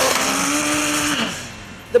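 Drag-racing cars accelerating hard off the line: a steady, high-revving engine note over a loud rush of noise that fades away after about a second and a half as the cars pull down the strip.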